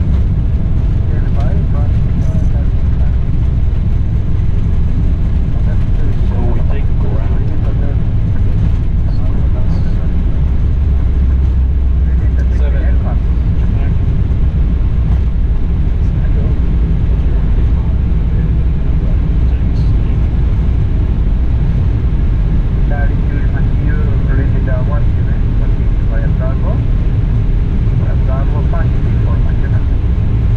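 Steady low rumble in an Airbus airliner's cockpit during the landing rollout just after touchdown: engine, airflow and runway noise as the aircraft rolls along the runway, with faint voices at times.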